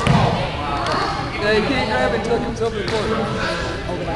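A basketball being dribbled on a hardwood gym floor, with a strong bounce right at the start, under steady chatter of voices in the gym.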